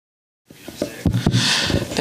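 Silence, then about half a second in the press-room microphones come up: a few knocks and a rustle from a handheld microphone being handled, with a short breathy hiss just before talking starts.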